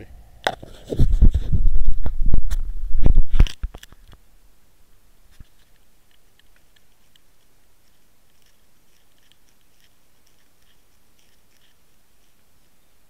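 Handling noise on a Water Wolf underwater camera's own microphone: a knock, then about three seconds of loud bumping and rubbing against the camera housing. After that it stops suddenly, leaving a low hiss with faint scattered ticks.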